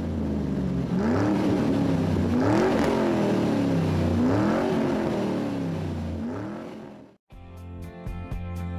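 Car engine idling and revved four times, each rev rising and falling in pitch; it cuts off abruptly shortly before the end, when music begins.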